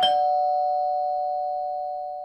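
Two-note falling bell chime like a doorbell's ding-dong: the lower second note is struck right at the start, while the higher first note is still ringing. Both notes ring on together and fade slowly.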